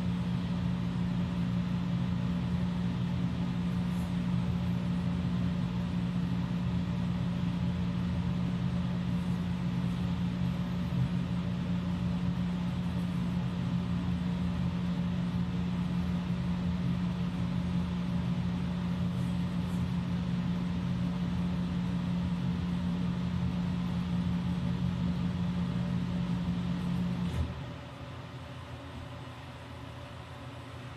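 Steady machine hum with a low drone, like a household appliance running, that switches off abruptly a couple of seconds before the end, leaving a quieter room background.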